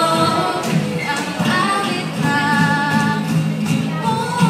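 Two girls singing together with acoustic guitar accompaniment, holding long sustained notes.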